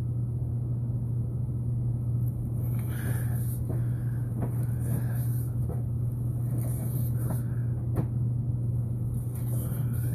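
A steady low hum with a few faint clicks and knocks scattered through it, one sharper click about eight seconds in.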